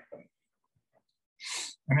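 A man's quick, sharp in-breath, about half a second long, near the end of an otherwise near-silent pause.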